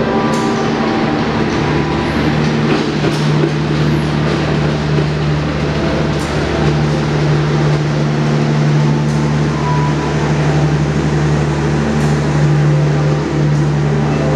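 Diesel-hauled passenger train pulling into the station: a steady low engine drone over the loud rumble of carriages rolling past, with a few short high squeals in the first few seconds.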